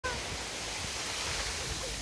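Ocean surf breaking and washing up a beach: a steady, even rush.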